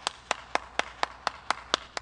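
One person clapping their hands steadily, about four claps a second.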